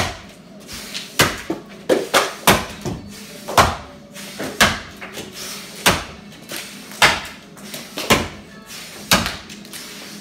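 Axe strokes chopping into a log block, a sharp chunk about once a second with a few lighter knocks between, ringing in a wooden barn.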